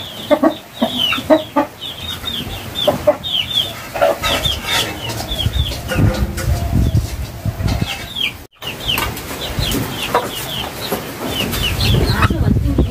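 Chickens clucking and peeping: many short falling chirps, repeated all through, with a brief break about two thirds of the way in.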